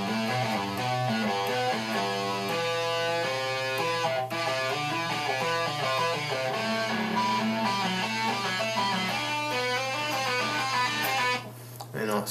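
Electric guitar playing a quick run of single notes, climbing and falling across the strings in a repeating finger-strengthening pattern, over a steady low hum. The playing stops shortly before the end.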